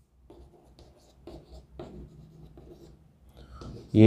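Chalk writing on a blackboard: a run of short, scratchy strokes as a few words are written.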